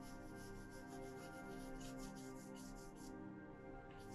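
A stiff printing brush scrubbing pigment across a carved wooden woodblock in quick back-and-forth strokes, about four or five a second, which stop about three seconds in. This is the block being inked with a warm gray colour before the paper is laid on. Background music plays throughout.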